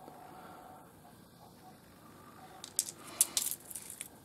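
Quiet room tone, then about a second of small, sharp clicks and clinks near the end as pieces of rough opal knock against each other while being handled.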